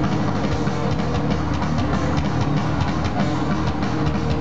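Heavy metal played at full volume: electric guitar with fast picking over drums, dense and unbroken.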